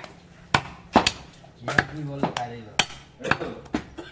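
A butcher's chopper cutting a goat leg through meat and bone on a wooden chopping block: about six sharp, separate blows at an uneven pace. A voice is heard briefly in the middle.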